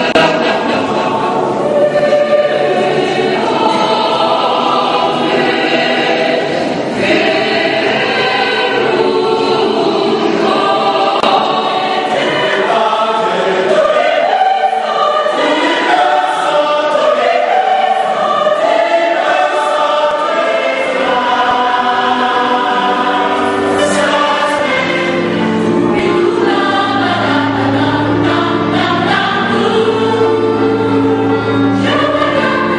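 A large choir singing in parts, continuously and at full voice; in the last third a deep, low part comes in strongly beneath the upper voices.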